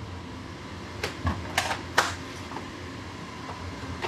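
Steady mechanical hum of warehouse ventilation, with a few short sharp clicks and rustles between one and two seconds in.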